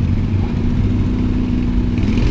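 Street traffic: a motor vehicle engine running with a steady low hum.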